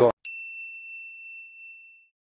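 A single high, clear ding, a transition chime sound effect, struck once about a quarter second in and ringing down until it fades out at the end.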